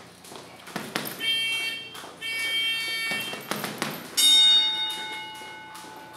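Gloved punches landing on a hanging leather heavy bag, about five hits. The bigger hits are followed by a bright metallic ringing, and the loudest hit, about four seconds in, rings on and slowly fades.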